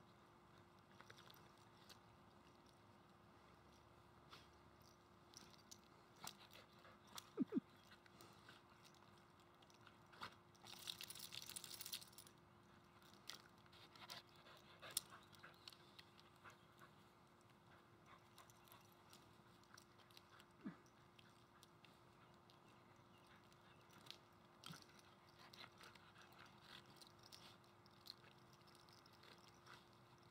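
Mostly quiet, with a small dog snapping and biting at a lawn sprinkler's water jet: scattered faint clicks, two sharp sounds about seven seconds in, and a brief hiss around eleven seconds.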